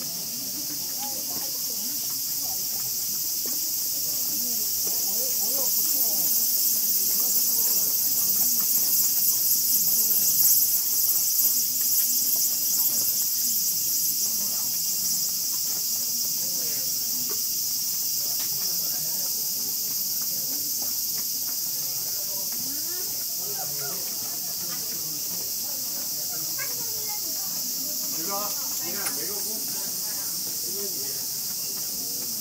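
Steady, high-pitched chorus of insects singing in the surrounding woods. It swells to its loudest about ten seconds in, then eases slightly. Faint voices of people passing sit underneath.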